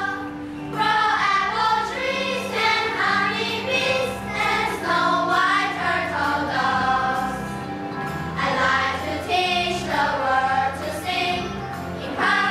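A children's choir singing an English song in unison over an instrumental accompaniment, in phrases with short breaths between them.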